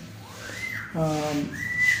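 Two short, high whistled notes at the same pitch, the first gliding up into it, with a brief low voiced sound between them.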